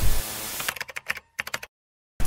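Editing transition sound effect: a short burst of static-like glitch noise, then a quick run of sharp clicks like keyboard typing that stops abruptly about 1.7 s in, leaving dead silence.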